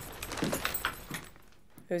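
Keys jangling and a paper grocery bag rustling as a man comes in through a door, a string of light clicks and rustles that dies away about a second and a half in.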